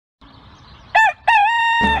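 A rooster crowing once about a second in: a short first note, then a longer held note. Music begins just as the crow ends.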